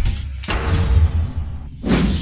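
Electronic transition sting: a deep bass rumble under a sweeping whoosh, with a sharp hit about half a second in and a second whoosh near the end.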